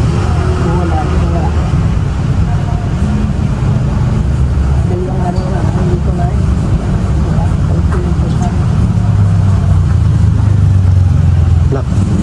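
Road traffic: a motor vehicle's engine running close by as a steady low rumble that swells louder about nine seconds in, with faint voices in the background.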